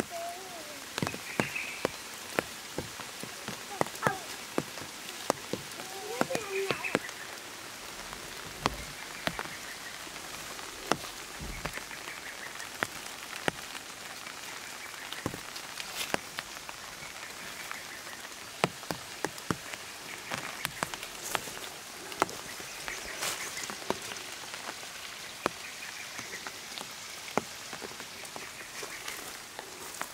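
Forest ambience: a steady hiss with many scattered sharp clicks and ticks, and a faint high note repeating every two seconds or so.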